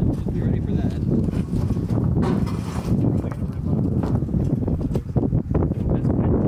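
Indistinct voices and knocking footsteps on a utility trailer's deck as men push a car down it, over a low rumble of wind on the microphone. A brief hiss comes about two seconds in.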